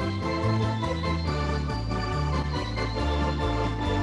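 A Lowrey home organ playing a Broadway-style arrangement: held chords over a bass line that steps to a new note about every half second, with a steady drum rhythm from the organ's rhythm section.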